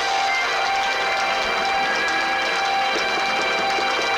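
Live band music led by an electric guitar played through a small valve amplifier, with long notes held steadily.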